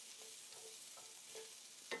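Chopped carrots and onions sauteing in oil in an enameled pan: a faint, steady sizzle.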